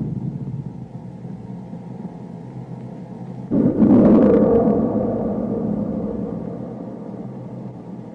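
Film-score sound design: a low sustained drone fading, then a sudden deep booming hit about three and a half seconds in that rings on and slowly dies away.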